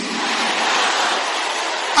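A congregation praying aloud all at once, many voices blending into a steady roar with no single voice standing out.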